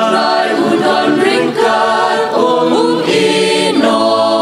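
Mixed choir of women and men singing in harmony, holding long sustained notes.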